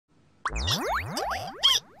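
Cartoon comedy sound effect: about four quick rising boing-like pitch sweeps in a row, the last one the loudest.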